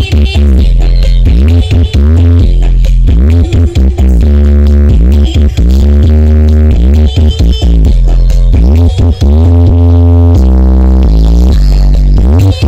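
Electronic dance music played very loud through a huge stacked outdoor sound system of the Indonesian 'sound horeg' kind, dominated by heavy sub-bass under a repeating synth line that swoops up and down in pitch.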